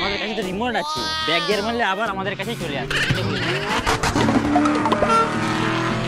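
Race-car engine sound, its pitch rising and falling in sweeps, laid over background music as a toy remote-control sports car drives off.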